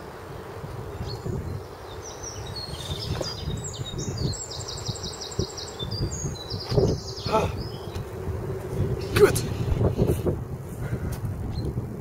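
A small songbird singing quick, high trilled phrases in the trees for a few seconds, over a steady low outdoor rumble. A few short knocks and rustles come in the second half.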